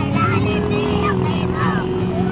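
Street march sounds: marchers' voices over traffic noise, with one long steady tone held from just after the start.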